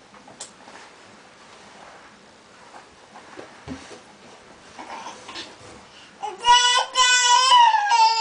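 A toddler's long, high-pitched whining cry, starting about six seconds in, held on one pitch and then falling. Before it, faint knocks and rustling as she moves about in a wooden cabinet, with one soft thump a little past the middle.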